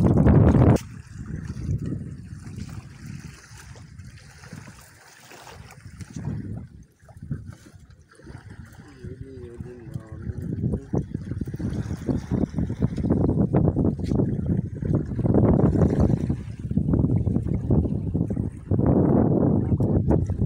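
Irregular rushing and sloshing of sea water around a wooden outrigger canoe at the shoreline, swelling and fading, with wind noise on the microphone. A short wavering voice-like sound comes about halfway through.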